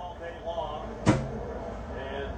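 Faint background voices, with a single sharp knock about a second in.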